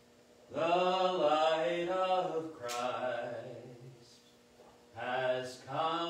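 A man's voice singing slowly in long held notes, a first phrase starting about half a second in and a second starting about a second after it dies away.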